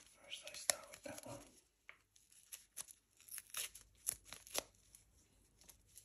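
Paper-foil wipe sachets and thin plastic gloves crinkling and crackling as they are handled, in a scatter of short sharp crackles and taps, busiest between about two and five seconds in.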